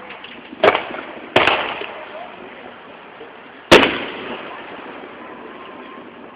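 Fireworks going off: three sharp booms, the first two close together and a louder third about two seconds later, each trailing off.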